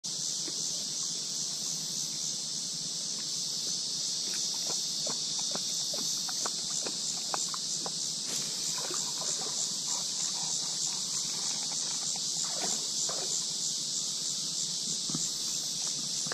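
A steady, high-pitched drone of insects calling in chorus, with faint scattered clicks and short chirps beneath it.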